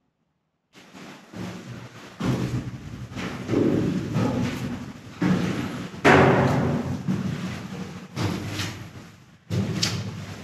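Footsteps on steel spiral stairs inside a hollow concrete tower: heavy thuds about a second apart, each booming and echoing on.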